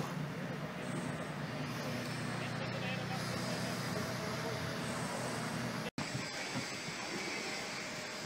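Steady outdoor hum of distant traffic and site machinery with a low drone underneath. The sound drops out for an instant about six seconds in, where the recording cuts, then carries on.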